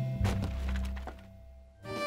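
Cartoon sound effect of a wooden block tower toppling: a quick cluster of thunks about a quarter second in, over a low held note that fades away. A bouncy tune starts near the end.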